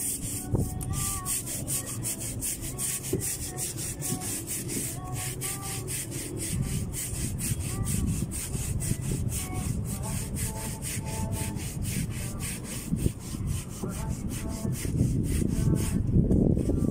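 Long-handled scrubbing brush scouring a boat's deck in quick, regular strokes, about three a second.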